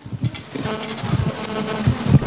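A steady electrical buzz through the microphone and sound system, starting about half a second in, with low rumbling thumps from the handheld microphone being handled.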